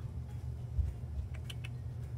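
Fingers handling a paper sticker sheet, with three light clicks in quick succession about a second and a half in, over a steady low hum.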